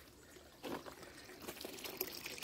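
Faint trickle of water pouring back into an above-ground pool from the recirculation pump's return pipe, growing louder in the second half.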